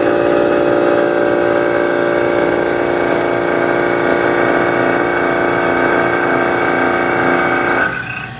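Vacuum pump running steadily with a pitched mechanical hum, evacuating the part under test at the start of a leak-test sequence. It cuts off suddenly near the end.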